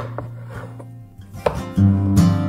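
Chef's knife slicing through eggplant and knocking on a wooden cutting board: two knocks close together at the start and another about a second and a half in, over acoustic guitar music.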